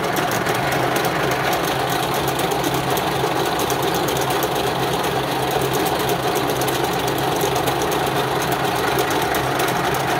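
Steeger USA vertical harness braiding machine running at steady speed: its bobbin carriers travel around the braiding track with a fast, even clatter over a steady mechanical hum.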